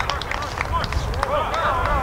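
Indistinct voices of players calling out on an open football pitch, with wind buffeting the microphone as a low rumble and a few short clicks in the first second.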